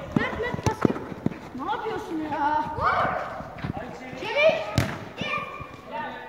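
Children's high-pitched shouts and calls during a small-sided football game, with several sharp thuds of the ball being kicked, the loudest about five seconds in.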